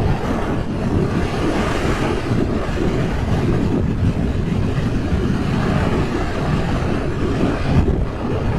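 Loud, steady wind noise on the microphone of a 2023 Suzuki GSX-8S moving at highway speed, with the bike's engine and tyre noise running underneath.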